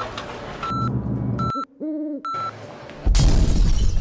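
Edited-in sound effects: a row of short, even beeps about three-quarters of a second apart, a brief hooting tone that rises and falls near the middle, then a loud crash-like noise with a heavy low rumble in the last second.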